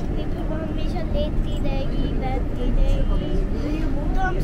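Steady low rumble of a tram running, heard from inside the car, with a young girl's voice talking over it.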